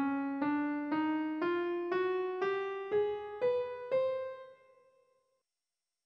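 The Dydygic scale (scale 2543) played upward on piano, one note about every half second, from middle C to the C an octave above: C, C♯, D, E♭, F, F♯, G, A♭, B, C. The top C rings out and fades.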